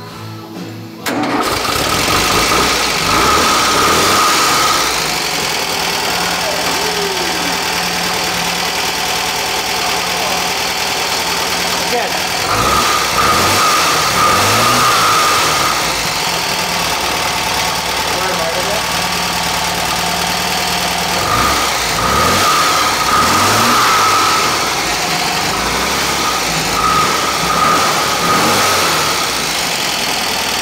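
Air-cooled flat-four engine of a 1966 VW split-screen bus cranked over and catching about a second in, then running, revved up and down several times.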